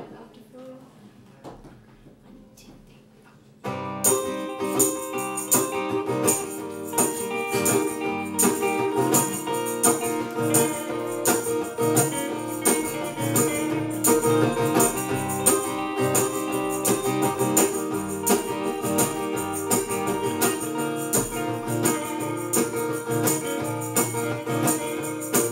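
A live band starts an upbeat song about four seconds in: acoustic and electric guitars with a hand-held tambourine shaken in a steady beat. Before that there is only a quiet room.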